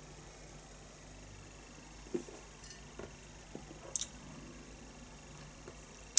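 Quiet room tone with a low steady hum, broken by a few faint sounds of beer being sipped from a glass mug: soft gulps about two and three seconds in and a sharp little click, glass against glass or lips, about four seconds in.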